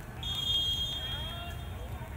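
Referee's whistle, one steady blast lasting about a second, awarding a penalty for handball.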